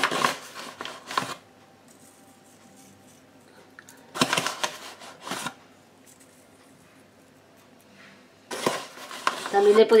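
A spoon scraping and clinking in a container of sugar in three short bursts a few seconds apart, as sugar is scooped to top unbaked magdalenas.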